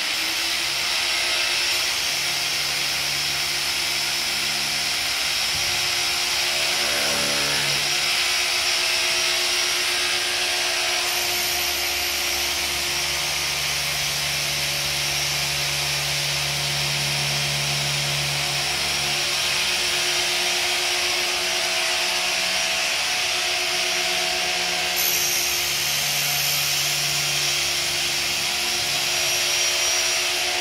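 Handheld power drill running continuously, boring into a pipe as in hot tapping. The whine holds a steady pitch while a lower hum comes and goes as the load on the bit changes.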